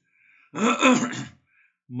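A man clearing his throat once, in a single rough burst just under a second long.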